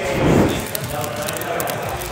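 Fire sound effect: a whoosh of flame catching, then crackling.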